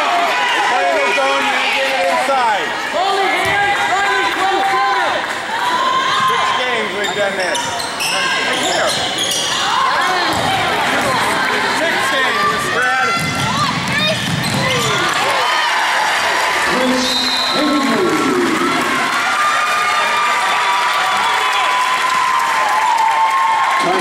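Basketball game sounds in a gym: a basketball bouncing on the court among many overlapping voices of spectators and players calling out.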